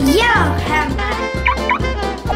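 Children's background music with a steady beat. Right at the start, a cartoonish warbling, gobble-like sound effect sweeps down in pitch, and two short upward chirps come near the end.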